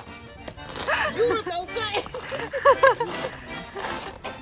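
People laughing and calling out over background music.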